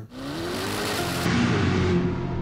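The Corvette ZR1 engine revving as heard in Chevrolet's teaser: a sudden rushing sound with a tone rising in pitch, heavily processed so that it is not a normal engine note. Low steady music tones come in under it.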